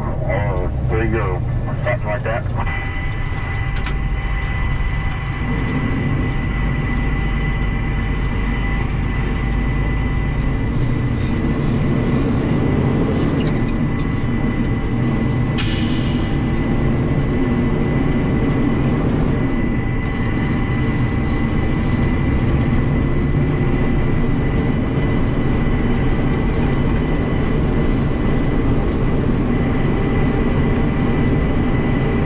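Kenworth T800 dump truck's diesel engine running steadily under way, heard from inside the cab, with a thin steady whine over the drone. A short hiss comes about halfway through.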